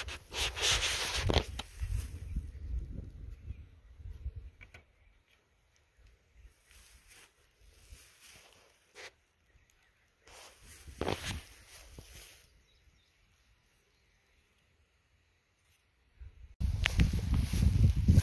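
Irregular gusts of wind buffeting the microphone, with rustling, separated by near-silent stretches. No steady motor or propeller sound: the model's capacitor is not charged.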